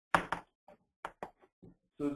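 A quick run of sharp knocks close to the microphone: two loud ones right together just after the start, then about five lighter ones spread over the next second and a half.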